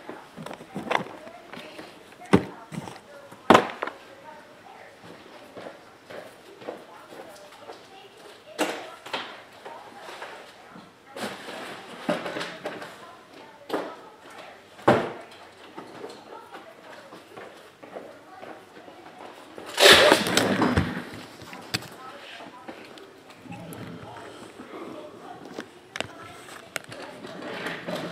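Scattered knocks and taps of shrink-wrapped trading card boxes being handled and set down on a fabric mat, with one longer, louder scraping rustle about twenty seconds in.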